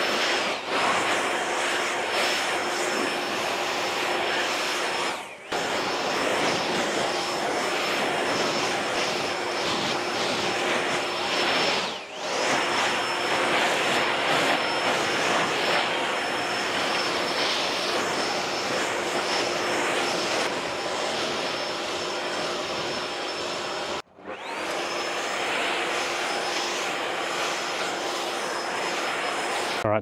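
Backpack leaf blower running at steady high power: a rush of air with a high, even whine over it. It breaks off briefly three times, and the whine climbs back up to speed after the breaks.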